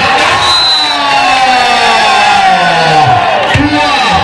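Volleyball spectators cheering, with a man's voice drawn out in one long shout that falls in pitch.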